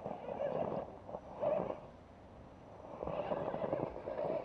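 Electric motor and geared drivetrain of a 1/10-scale Axial Wraith radio-controlled rock crawler whining under load as it is throttled up a rock, in three surges with short pauses between.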